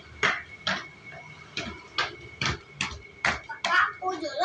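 Irregular sharp metal clicks and taps, about two a second, from a screwdriver and hand working at a children's bicycle's rear hub and chain.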